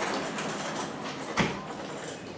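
Autonomous hospital delivery robot rolling into an elevator: a steady rumble of its drive and wheels, with one knock about one and a half seconds in.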